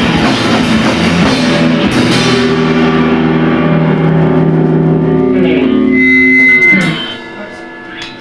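Live rock band with electric guitars and drum kit playing. About two seconds in, the drums and cymbals stop and held guitar chords ring on, then the music falls away near the end.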